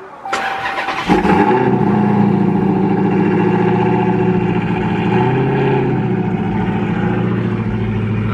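A car engine is cranked by its starter for under a second and catches about a second in, jumping to its loudest. It then settles into a steady idle, with a slight rise in pitch around the middle.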